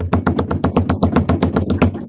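Improvised drum roll tapped out by hand: rapid, even taps at about ten a second.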